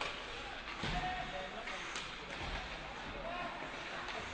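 Ice hockey rink sound during live play: a steady hiss of skates on ice with a few faint knocks of sticks and puck, and faint distant shouts.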